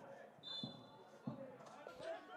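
A faint referee's whistle, one short steady blast about half a second in, followed by two dull thumps.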